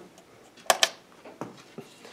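Two light, sharp clicks close together a little after half a second in, then a couple of fainter taps: small handling clicks on a workbench.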